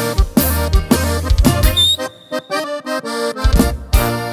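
Live norteño band music with no singing: accordion over tuba bass, guitar and drums. It eases off about two seconds in and comes back with a hard accented hit at the very end.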